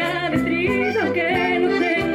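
A woman singing a folk song live through a microphone, her melody sliding between held notes, over a small acoustic band with guitars playing along.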